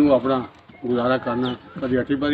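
An elderly man speaking in Punjabi, in short phrases with two brief pauses.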